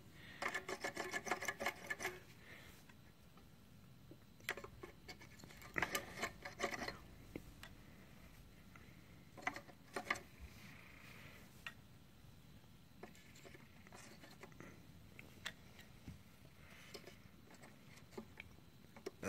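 Faint clicks and taps of an autoharp's aluminium-and-wood chord bars being handled and set into their holder: a quick run of ticks at the start, then scattered single clicks and small clusters.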